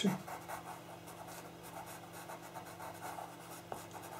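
Pastel pencil scratching across pastel paper in short, repeated strokes as more colour is laid on.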